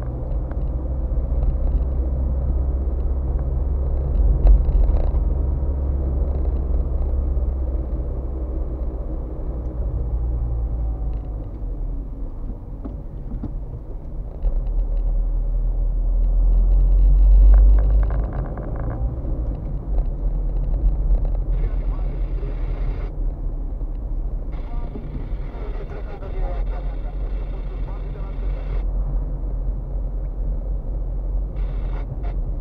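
Car engine and road noise heard from inside the moving car: a steady low rumble that swells to its loudest a little past halfway, then settles back.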